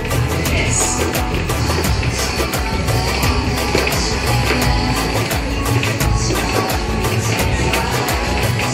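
Upbeat music with a steady driving beat and heavy bass.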